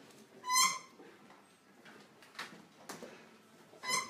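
A short, high squeak about half a second in and a second one near the end, with a few soft knocks and rustles in between, as people shift about in a quiet room of chairs on a tiled floor.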